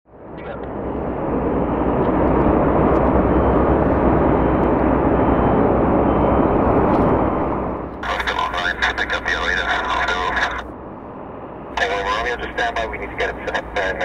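Air traffic control radio audio: a steady hiss of static for about eight seconds, then clipped, narrow-band radio voice transmissions.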